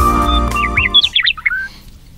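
Organ music that stops about halfway through, overlapped by a bird chirping a quick series of high, sliding notes.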